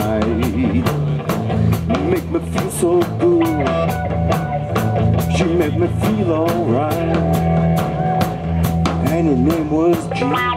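Live rock band playing with electric guitars, bass guitar and a drum kit. The drums keep a steady beat of about four strikes a second under a lead line that bends up and down in pitch.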